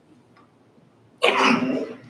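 A man's single loud cough about a second in, after a quiet pause.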